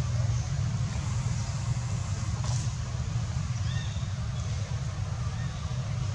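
Steady low rumbling background noise, with two faint short high chirps, one after about four seconds and one near the end.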